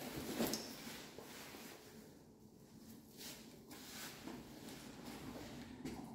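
Faint rustling of a backpack being swung on and shouldered, with a few soft taps and knocks of its straps and fittings.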